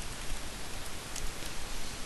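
Steady hiss of a headset microphone's background noise, with a few faint keyboard clicks as a command is typed.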